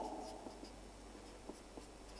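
Black felt-tip marker writing on paper: faint scratchy strokes of the tip across the sheet, with a couple of light ticks near the end.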